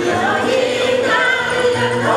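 A women's choir singing a traditional Paiwan chant together in sustained, flowing notes, with low held notes underneath.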